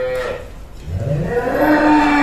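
Water buffalo mooing: one long call that starts about a second in, rises in pitch and then holds steady.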